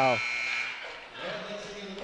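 Gymnasium crowd noise fading after a missed last-second shot at the halftime buzzer, with a man's exclaimed 'wow' ending just at the start.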